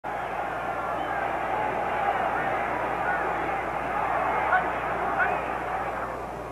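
Football stadium crowd noise on an old television broadcast: a steady hubbub of many voices with scattered individual shouts, over a low steady hum.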